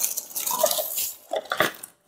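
Plastic mailer bag rustling and crinkling as hands rummage inside it and pull out a boxed item.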